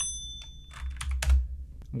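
A few computer keyboard keystrokes, with one heavier low thump a little past halfway. A high bell chime from a subscribe-button overlay rings out at the start and fades away within the first second.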